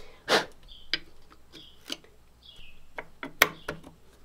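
Hand inletting of a flintlock lock into a wooden gunstock: a string of sharp taps and clicks of steel chisel and lock plate on the wood, with a louder quick cluster of knocks a little after three seconds in.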